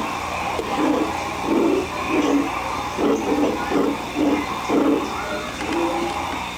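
Footsteps on a wooden boardwalk deck, a steady walking rhythm of about ten dull steps over a general background din.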